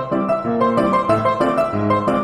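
Piano music: a steady stream of notes over a lower bass line.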